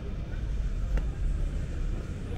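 Low, steady rumble of city street noise, with one short sharp click about a second in.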